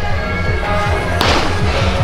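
Temple procession music, with steady sustained instrument tones over a rapid run of low drum strokes. A single sharp crack cuts through about a second in and rings briefly as it dies away.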